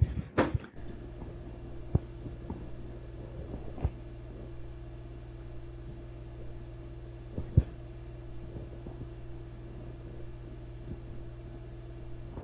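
Low, steady hum of an ARAID backup drive enclosure running on its new, quieter replacement fan, with a steady tone above it. A few faint knocks come through, about two, four and seven seconds in.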